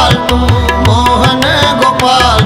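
Kirtan accompaniment: tabla playing a steady rhythm with bass strokes that swoop up in pitch, over sustained harmonium.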